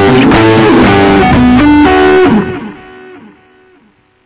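Electric guitar playing a riff of picked notes and chords, stopping a little past two seconds in and dying away to near silence.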